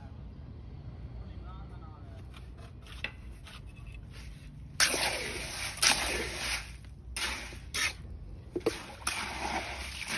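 Wet cement and stone-chip mix being stirred by hand and scooped with a cup in a basin: a run of splashing, sloshing scrapes starting about five seconds in, over a low background rumble.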